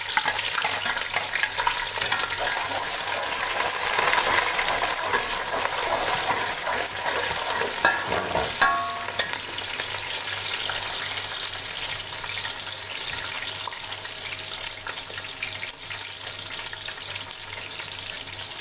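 Sliced onions and whole spices sizzling in hot oil in an aluminium pot, a steady hiss that is loudest at first and settles quieter about halfway through. A couple of sharp metallic clinks with a brief ring come just before halfway, the metal slotted spoon knocking the pot.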